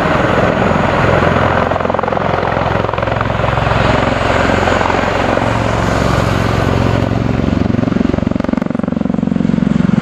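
Bell Boeing CV-22 Osprey tilt-rotor in helicopter mode, climbing away from a low hover: loud, steady rotor beat over turbine noise. In the last few seconds it sweeps in pitch as the aircraft banks away.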